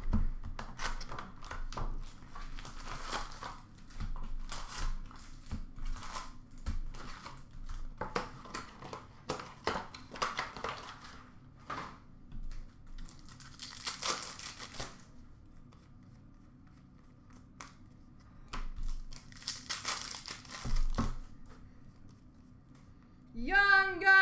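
Foil trading-card packs being handled and torn open: many short crinkles and rustles of the wrappers, with two longer tearing rips in the second half.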